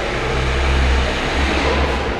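Lamborghini Gallardo Spyder's V10 engine running with a steady low rumble that swells slightly toward the middle.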